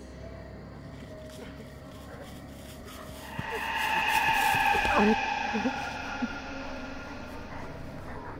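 A man's distressed vocalising: strained groans build into a loud, sustained scream from about three and a half seconds in, which breaks off at about five seconds into short gasps and grunts.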